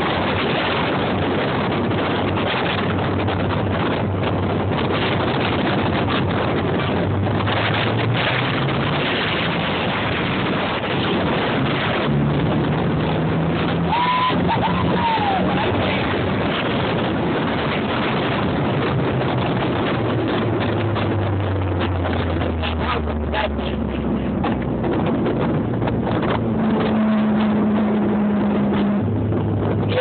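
Inside the cabin of a 1990s Mitsubishi Eclipse GST, its turbocharged 2.0-litre four-cylinder runs under hard driving over heavy road and wind noise. The engine pitch climbs and drops as it revs through gear changes, and a brief high chirp comes about halfway through.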